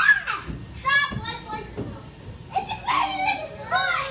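Young children's high-pitched voices calling out and chattering in short bursts while playing, starting with a squeal that trails off.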